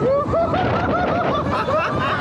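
A man laughing in a quick run of short ha-ha syllables, about five a second, over wind rushing across the microphone of a camera on a moving fairground ride.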